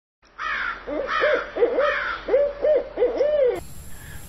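Owl hooting: a quick run of short hoots, each rising and falling in pitch, which stops about half a second before the end.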